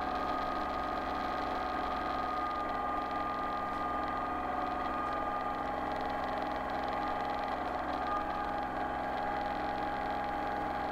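Kubota compact tractor's diesel engine running at a steady speed, with an even pitch throughout, while the front-loader grapple scoops up leaves.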